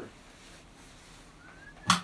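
Quiet room tone, then a single sharp knock or click near the end, with a faint thin wavering tone just before and around it.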